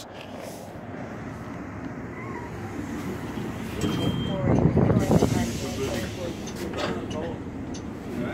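City bus pulling in at a stop, its engine and road noise swelling about four to five seconds in, with a short high squeal just before. After that come scattered knocks and clicks as the bus is boarded.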